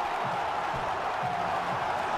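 Large stadium crowd cheering and roaring, a steady unbroken wall of noise.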